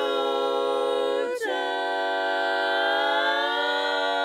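Women's barbershop quartet singing a cappella in close four-part harmony: a held chord, a short break about a second in, then a long sustained chord in which some voices slide slowly upward.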